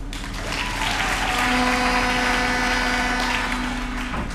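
Audience applauding, swelling for about two seconds and then dying away, with a few steady held notes sounding underneath.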